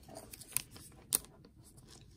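A trading card being slid into a thin clear plastic penny sleeve: faint plastic rustling, with two short sharp ticks about half a second apart.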